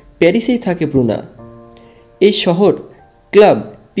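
A voice narrating in Bengali in three phrases, over a steady high-pitched tone that runs underneath throughout.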